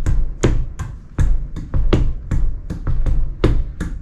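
Body percussion played as a drum groove: hand slaps on denim-covered thighs keeping time over heel and toe taps on a rug. Sharp slaps come in a steady rhythm of about two to three a second, with dull low thumps underneath.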